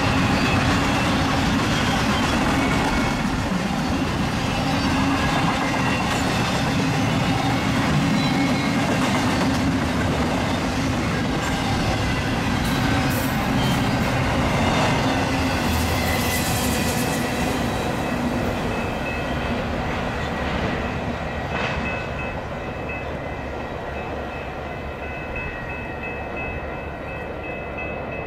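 Double-stack container freight cars rolling past close by, a continuous rumble of wheels on rail. It eases off over the last several seconds as the end of the train passes and draws away.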